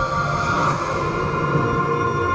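Film-trailer score: sustained orchestral chords held steady, playing from the trailer.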